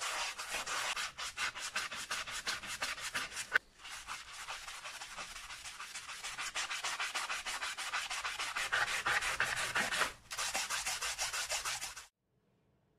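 Foamy scrubbing of a sneaker's rubber sole and midsole in rapid back-and-forth strokes. It breaks off briefly about three and a half seconds in and again near ten seconds.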